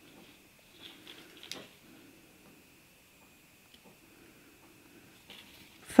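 Faint handling sounds of thin copper wire and flush cutters being moved into place, with a light click about one and a half seconds in.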